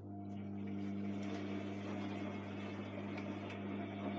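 Electrolux Time Manager front-loading washing machine running: a steady machine hum with a low drone comes on right at the start and holds.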